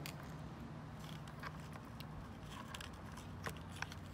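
A few faint clicks and taps of a plastic take-up spool being seated in a Mamiya RB67 film back, over a steady low background hum.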